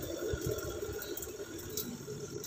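Spin-dryer basket of a Sharp twin-tub washing machine running on its newly replaced motor, a steady low whir that eases off slightly towards the end.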